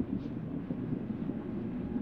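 Steady low rumbling noise with a faint hiss above it, even throughout.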